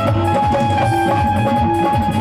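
Live Indian devotional folk music, amplified: drums beating a quick, steady rhythm under a held melody line from a keyboard instrument.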